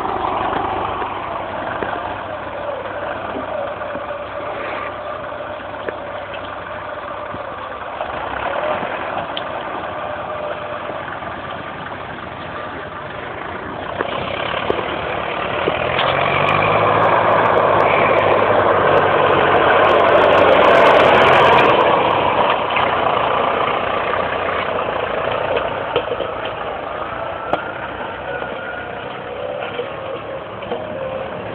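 IMT farm tractor's diesel engine running. It swells louder for several seconds about halfway through, then eases back to a steadier level.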